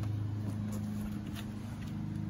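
A steady low engine hum running evenly, with no change in pitch.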